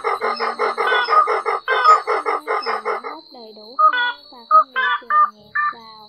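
White-breasted waterhen calls played as a trapping lure: a rapid, even run of repeated harsh notes, about six a second, for the first three seconds, then scattered shorter calls. Music is mixed in with the calls, with a thin steady high tone throughout.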